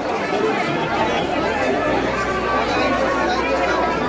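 Dense crowd chatter: many voices talking at once in a packed throng. A low steady hum runs underneath, growing stronger after about a second.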